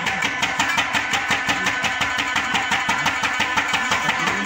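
Pashto folk instrumental music: tabla and rabab playing a fast, even run of strokes, about eight a second.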